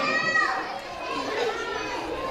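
High-pitched children's voices, a short call and then softer chatter, with no whistle sounded.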